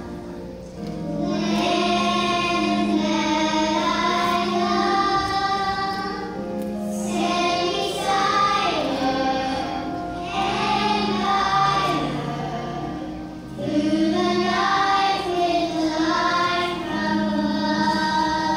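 Young children singing a song with musical accompaniment, a girl's voice at a microphone leading. The phrases have short breaks between them.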